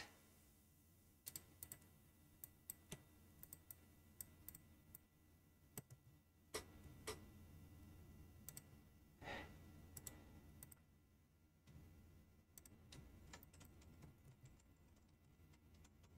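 Faint, irregular computer keyboard keystrokes and clicks, a few at a time with pauses, over near-silent room tone, with a short soft rush of noise about nine seconds in.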